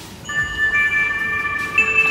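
Geoground Gold Legend metal detector powering up: an electronic start-up tune of several held high tones sounding together, with a new note coming in before halfway and another near the end.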